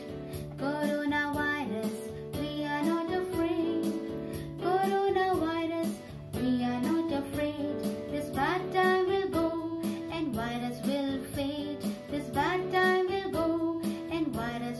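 Electronic keyboard playing an instrumental interlude: a melody of held notes over a steady bass and chord accompaniment, with a quick upward run about eight and a half seconds in.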